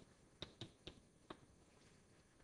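Chalk tapping and clicking against a blackboard while writing: four faint, short, sharp knocks at uneven spacing.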